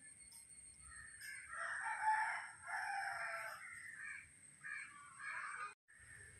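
A bird calling faintly: one long call of about three seconds starting about a second in, then two short calls near the end.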